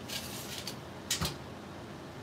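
Quiet handling noise while a quilt is measured with a tape measure: a light rustle, then one sharp click just over a second in.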